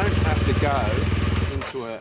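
BMW R 1200 GS boxer-twin engine idling with a steady low rumble, cutting out abruptly about one and a half seconds in.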